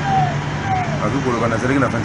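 A road vehicle's engine hum in the background for the first second or so, under a man talking.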